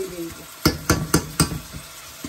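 A metal spoon knocked four times in quick succession on the rim of a metal saucepan, about four knocks a second, with a short ring after each. Underneath, shredded vegetables fry with a faint sizzle.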